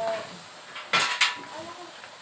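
Two sharp clinks of metal utensils against dishware, about a quarter second apart, about halfway through; the first rings briefly.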